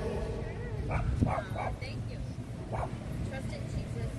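A dog barking a few short times, over the steady noise of road traffic.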